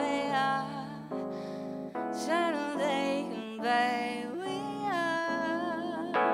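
A woman singing a slow song into a microphone, with vibrato on the held notes, accompanied by sustained keyboard chords. About a second in the voice drops out briefly and only the chords sound, then she comes back in.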